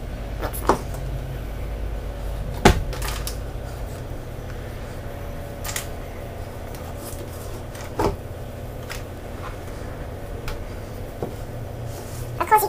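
Cake batter being scraped into a metal baking tin, with several sharp knocks of a kitchen utensil against the dish, the loudest about two and a half seconds in, over a steady low hum.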